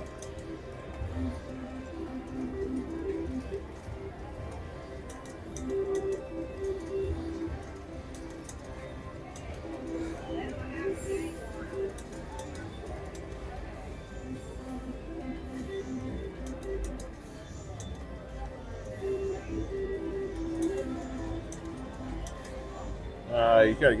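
Casino floor sound around a Double Gold mechanical three-reel slot machine as it is played: the reels spin while recurring bursts of steady electronic chime tones, each a second or two long, sound over background chatter and music.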